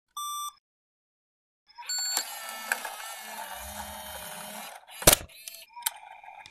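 A short electronic beep, then a pause, then about three seconds of a steady, noisy mechanical whirr, followed by a sharp loud click and a second click near the end.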